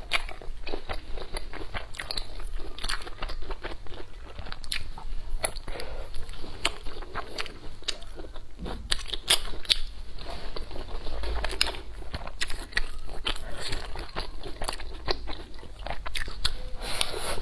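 Close-miked chewing and biting of food, with a dense, continuous run of sharp crunching and wet mouth clicks.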